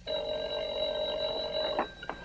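Telephone bell ringing: one ring lasting a little under two seconds that cuts off sharply.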